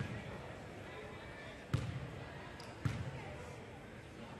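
A basketball bounces three times on a hardwood gym floor as a free throw is set up: a sharp thump at the start, then two more about a second apart, each echoing briefly in the gym.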